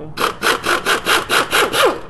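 Handheld power wrench running in pulses about four times a second, spinning off one of the 13 mm starter mounting nuts, with a rising whine near the end.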